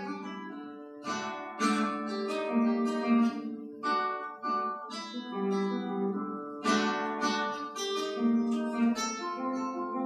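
Solo classical guitar with nylon strings, played fingerstyle: a melody over bass notes and chords, with a few full chords struck about a second in and again near seven seconds.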